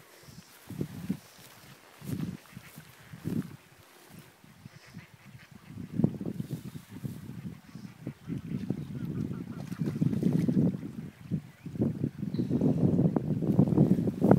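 Wind gusting across the microphone in uneven low buffets, sparse at first and then steadier and stronger from about halfway through.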